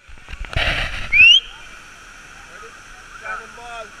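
Waterfall rushing steadily, broken about half a second in by a short noisy burst and then, just after a second in, by a loud, brief, rising high-pitched call.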